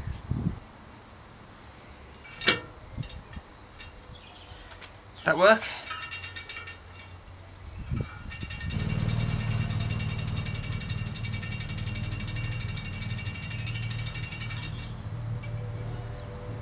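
A few scattered clicks and knocks as hub parts are fitted, then, about halfway in, a Campagnolo Athena freehub starts ratcheting: a fast, steady run of even pawl clicks with a low hum under it for about six seconds, which stops shortly before the end. It is the sign that the pawls have engaged in the freshly reassembled hub.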